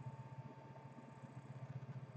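Faint room tone: a low steady hum with a quick flutter in it and a faint thin steady whine above.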